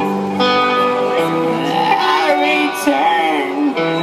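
Indie dream-pop band playing live: sustained electric guitar chords over drums, with a voice singing in the middle.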